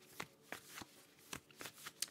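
Tarot cards being handled: a few faint, short clicks and flicks, about six in two seconds.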